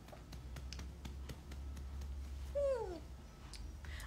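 Newborn baby giving one short whimper that falls in pitch, about two and a half seconds in, over a low steady hum.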